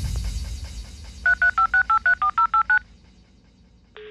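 Techno music fading out, then a telephone keypad dialling a number: about eleven quick touch-tone beeps in a second and a half, each a two-tone chord of changing pitch.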